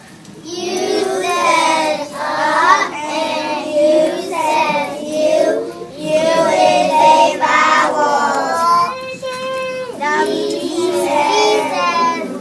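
A group of kindergarten children singing together, a letter-sounds song in which each letter 'says' its sound, with one note held steady about nine seconds in.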